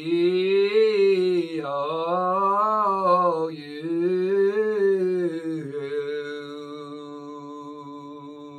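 A man singing a vocal breathing exercise on vowel sounds, sung with diaphragmatic breathing, along with a digital keyboard. He sings three rising-and-falling runs, then a long steady note that fades away near the end.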